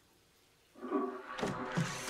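Toilet flushing, with water rushing in suddenly about a second in, and a click or two of the bathroom door being opened.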